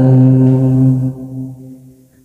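A man's voice chanting Hòa Hảo Buddhist scripture verses, holding the last syllable of a line on one steady low note that fades out from about a second in, ending the phrase in near silence.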